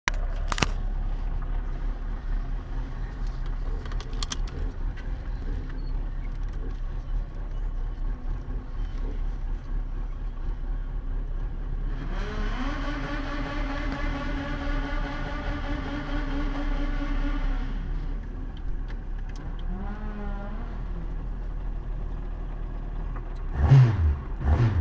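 A car engine idling with a steady low rumble, heard from inside a waiting car. About halfway through, a second engine's note rises, holds steady for about five seconds, then falls away. Revving picks up at the very end.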